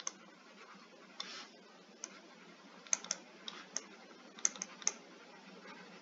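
Faint, irregular taps and ticks of a stylus on a tablet screen during handwriting, most of them in the second half, with a brief scratch about a second in.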